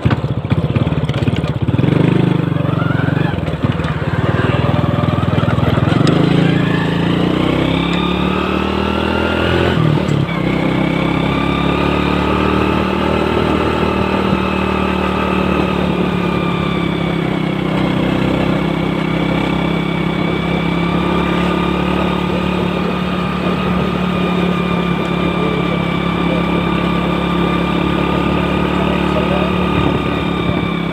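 Honda Astrea Grand motorcycle's small four-stroke single-cylinder engine under way, heard from the rider's seat. It rises in pitch as it accelerates through the gears, drops about ten seconds in at a gear change, then settles to a steady cruising note with slight rises and falls of the throttle.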